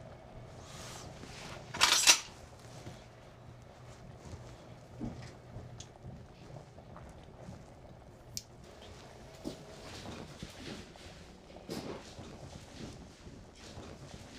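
Quiet room with faint handling sounds of objects at a counter, scattered light clicks and rustles, and one short loud noisy burst about two seconds in.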